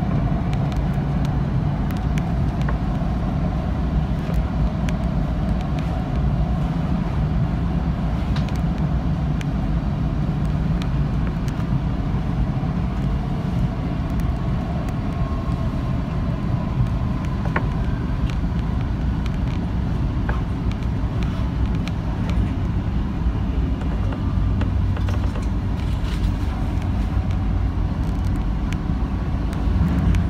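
Metro train running steadily on the track, heard from inside at the front: continuous rumble of wheels on rail with a faint whine over it.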